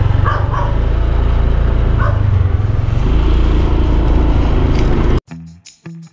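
Loud, steady low rumble, such as wind buffeting a handheld microphone outdoors. It cuts off suddenly a little after five seconds and gives way to background guitar music.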